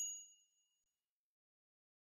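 A single high, bright ding, a bell-like chime sound effect, ringing away and dying out within about the first second.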